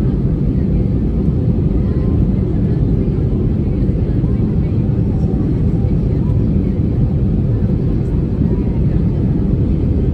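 Airbus A319 cabin noise in flight shortly after takeoff, heard from a seat over the wing: a steady low roar of the jet engines and rushing air.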